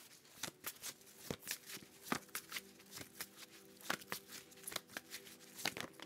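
Tarot cards being shuffled and handled: a quiet run of irregular snaps and ticks, a few a second.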